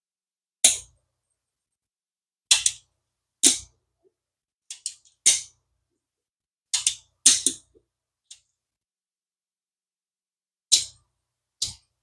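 Sharp clicks and taps from the parts of an Abu Garcia Ambassadeur 5000 baitcasting reel being handled and fitted together: about a dozen short, separate clicks at an uneven pace, some in quick pairs.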